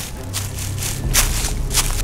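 Footsteps of a person running over grass and rock, a few sharp, uneven steps, over a low steady background of film soundtrack music.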